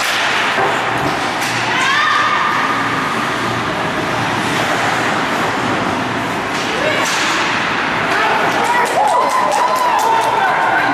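Ice hockey game sounds in a rink: spectators and players calling out, with occasional thuds and clacks of sticks and puck, and a quick run of sharp clacks near the end.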